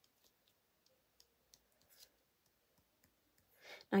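Faint, irregular ticks of a white gel pen's tip tapping dots onto card.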